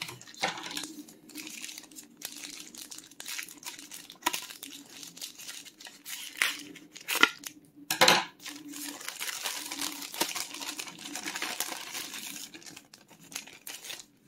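White plastic mailer bag crinkling and rustling as it is handled and opened, with louder crackles about seven and eight seconds in.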